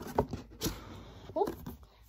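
Pokémon booster packs being handled close to the microphone: a few light taps and clicks, then a short rustle of the packaging, followed by a brief "ooh".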